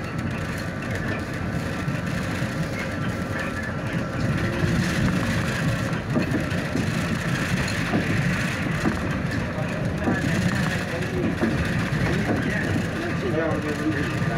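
Steady running and road noise inside a city bus as it drives along between stops.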